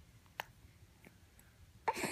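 A baby hiccuping: a short sharp hiccup about half a second in and a louder one near the end, repeating about every second and a half.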